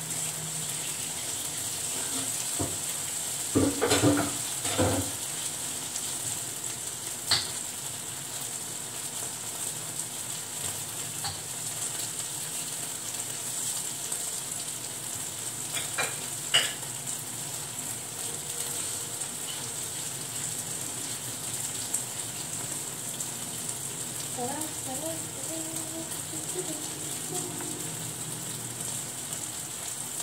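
Food frying in a nonstick frying pan, sizzling steadily. Dishes and utensils clatter in a burst about four seconds in, with single sharp clinks later.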